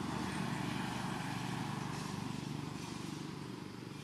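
A steady low motor rumble, loudest in the first second and slowly fading.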